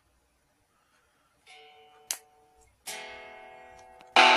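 Two faint strummed chords on a Pignose mini electric guitar, one about a second and a half in and one near three seconds, each dying away, with a short click between them. The guitar's built-in amplifier is cutting out, so it gives little output.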